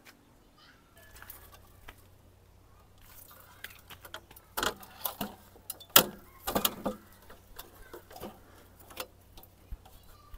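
A stepladder being handled and set up: a run of irregular clanks and rattles, the loudest about six seconds in.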